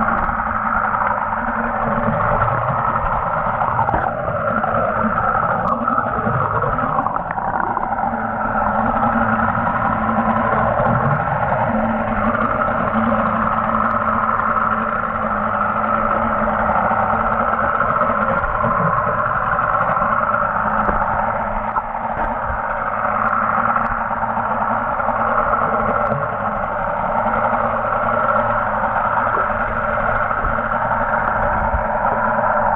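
Steady underwater noise heard through a waterproof camera housing: a constant, muffled hum with a low steady tone under it and no breaks.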